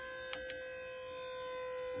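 Pull-test rig's motor running with a steady whine as it slowly loads a prusik hitch gripping two ropes, the force climbing. Two faint clicks come early on.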